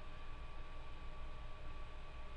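Faint room tone between words: a steady hiss with a low hum and a thin, steady high tone.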